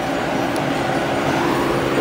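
Electric blower fans of inflatable tube-man air dancers and yard inflatables running: a steady rush of air with a faint, even motor hum.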